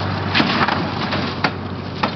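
Overturned Chevy 2500HD pickup rolling back onto its wheels, its body crunching and scraping against the ground. Sharp cracks come about half a second in and again near a second and a half, and a thump sounds as it lands at the end. A low hum underneath stops at the first crack.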